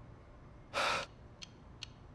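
A man's sharp, breathy intake of breath, once, just under a second in. Faint, evenly spaced ticks follow, about two and a half a second.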